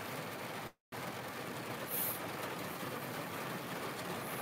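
Steady background noise, an even hiss with no clear pitch or rhythm, cut by a brief dropout to dead silence just under a second in.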